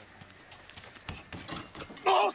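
Running footsteps on dirt and dry grass, quick footfalls that grow louder toward the end as the runner closes in.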